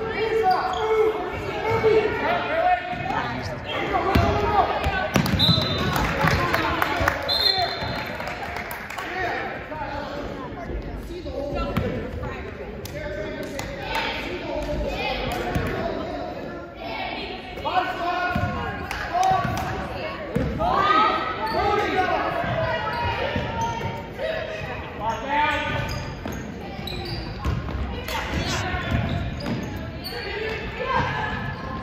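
Basketball bouncing on a hardwood gym floor, with the voices of players and spectators echoing in the hall.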